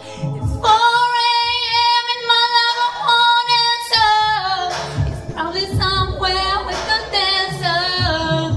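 A woman singing a pop song into a microphone: a long, steady high note held for about three seconds, then shorter phrases that slide down and up between notes. A low thumping beat runs underneath.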